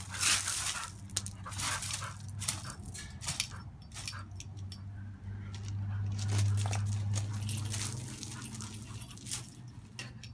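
Two dogs playing on gravel: paws scrabbling and crunching the gravel in short bursts, mixed with the dogs' playful vocal noises. A low rumble swells in the middle.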